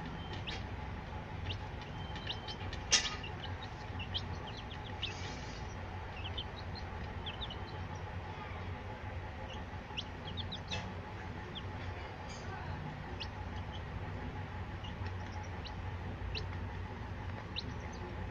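Newborn Cochin bantam chicks peeping and pecking crumbled chick feed off a steel plate: many short, high, scattered ticks and chirps, with one sharp, louder tap about three seconds in.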